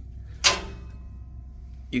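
A single sharp click about half a second in, followed by a short ringing that fades within about a second, over a steady low hum.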